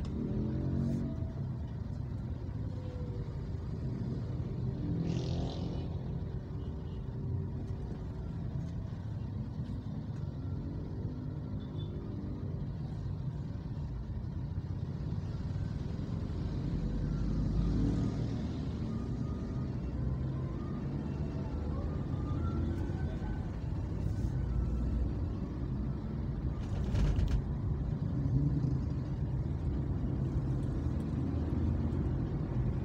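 Traffic noise in slow city traffic: a steady low rumble of car and motorcycle engines and tyres, with a couple of brief sharper sounds about five seconds in and near the end.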